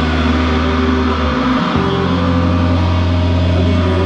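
Live rock band with amplified electric guitars and bass holding sustained notes while the drums stay silent. The bass moves up to a new held note about one and a half seconds in.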